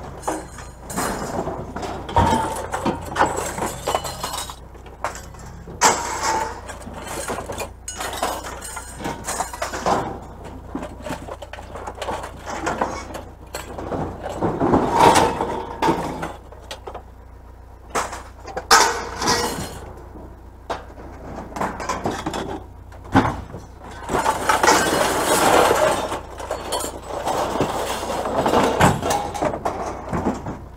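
Scrap metal being unloaded by hand: irregular clanks, clinks and rattles as metal pieces, wire racks and tubing are handled and tossed onto a scrap pile.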